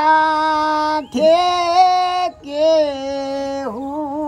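Unaccompanied solo voice singing a Gujarati folk wedding song (fatana) in a high register, holding long steady notes in phrases of about a second with short breaths between them.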